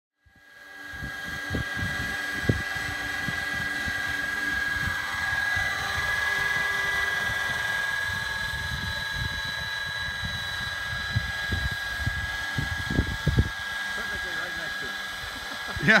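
Radio-controlled scale MD 500E helicopter hovering: a steady high-pitched whine from its motor and rotors, fading in over the first second.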